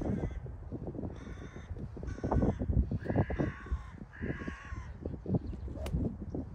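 Crows cawing, four calls about a second apart, over a low rumble. Just before the end, one sharp click of a golf club striking the ball off the tee.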